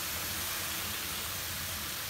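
Shredded cabbage, carrot and chicken filling sizzling in a metal pan over heat: a steady hiss.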